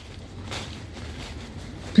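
Low steady outdoor rumble with faint rustling of dry fallen leaves underfoot.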